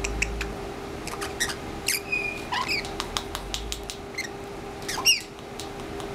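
Blue-headed pionus parrot making scattered sharp clicks and short high squeaky chirps, with one louder squeak falling in pitch about five seconds in.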